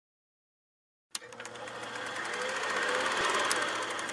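Film projector sound effect: after about a second of silence, a click and then a rapid, even mechanical clatter of the shutter and film feed, growing louder.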